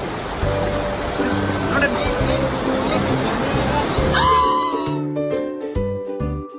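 Rushing whitewater of river rapids under background music with a steady beat, with a brief shout about two seconds in. The water noise cuts off suddenly about five seconds in, leaving the music alone.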